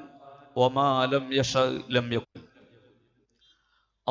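Speech only: a man's voice for about two seconds, then a pause with near silence.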